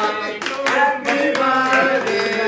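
A group of men singing a birthday song together, clapping their hands along with it.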